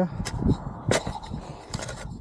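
Garden hoe chopping into dry sandy soil: a couple of sharp strikes, the strongest about a second in, with scraping and crunching of earth around them.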